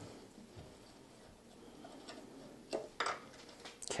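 A few light clicks and knocks of parts being handled on a motorcycle's fuel tank as its front bolt is taken out and the tank is raised, over faint room tone, coming in the last second and a half.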